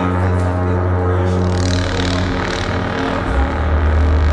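Live experimental electronic noise music: a dense, steady drone of many held tones over a deep bass, with hissy swells in the treble around the middle. About three seconds in, the bass drops lower and gets louder.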